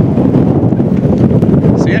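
Strong wind buffeting the microphone, a loud, rough rumble that rises and falls without let-up.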